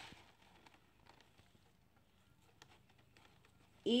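Faint rustling and small handling ticks as tulle fabric is wrapped and tied around a cardboard box; otherwise near silence.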